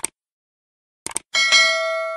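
Subscribe-button animation sound effect: short sharp clicks at the start and again about a second in, then a bright bell ding of several ringing tones that fades slowly.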